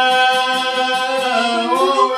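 A man's voice singing a long held note of an Albanian folk ballad, sliding up in pitch near the end, over a çifteli plucked in a steady rhythm with a violin accompanying.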